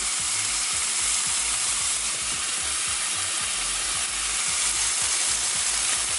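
Jasmine rice and olive oil sizzling steadily in a hot pot as spoonfuls of tomato sauce go in.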